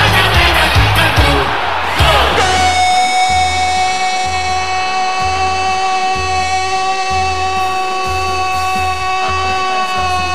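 Radio goal jingle: music with a steady bass beat, and from about two seconds in one long held note that runs to the end.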